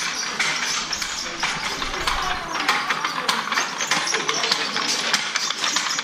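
Wooden silk handlooms clattering: a rapid, irregular run of wooden knocks and clacks from the beaters and shuttles of looms at work.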